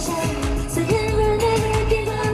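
A woman singing a pop song into a handheld microphone over backing music with a steady beat, holding one long note in the second half.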